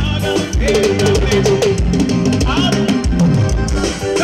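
Live forró band playing on stage: a steady drum-kit beat with bass drum and bass notes under a bending melody line.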